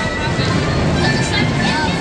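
Carousel ride music playing loudly, with people's voices mixed in.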